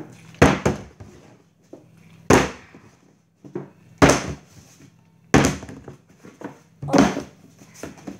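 Plastic drink bottle being flipped and thudding down onto a wooden table, five times, a second and a half to two seconds apart.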